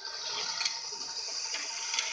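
Technofix Car Elevator tin toy running: small tin cars rolling along the metal track and the lift mechanism working, a steady rushing rattle of tin with a few sharper clicks.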